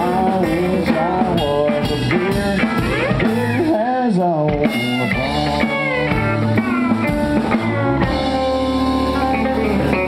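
Live country band with an electric guitar solo: a Telecaster-style electric guitar plays lead lines full of bent notes over bass and drums. The lead settles into steadier held notes near the end.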